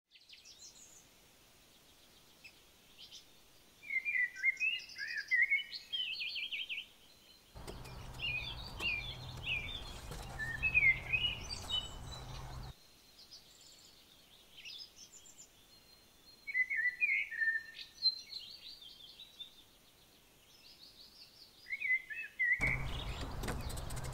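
Woodland songbirds singing, many short chirps and trills from several birds. Twice a low steady hum with a rushing noise cuts in abruptly and cuts out again, from about eight seconds in to about thirteen, and again near the end.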